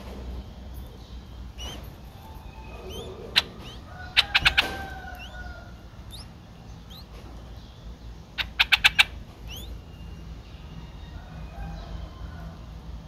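Faint, short rising bird chirps repeat on and off. Loud, sharp clicks break in: a single one about three seconds in, then two quick runs of about five clicks, just after four seconds and again near nine seconds.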